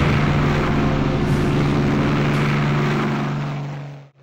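Whirring engine of a small flying craft: a steady hum over a rushing noise that fades away near the end.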